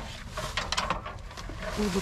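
Plastic bags and bubble wrap rustling, with a string of light knocks and clicks as a slatted wooden laptop stand is handled and shifted among the rubbish.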